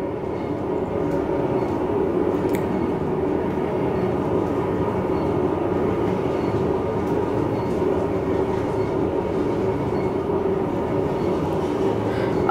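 Otis Elevonic scenic traction elevator car running at speed, heard from inside the glass cab: a steady rumbling ride noise with a constant low hum.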